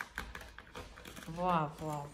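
A cat's claws scratching a sisal scratching mat: quick, irregular scratchy clicks through the first second or so. A woman's voice is heard briefly over it in the second half.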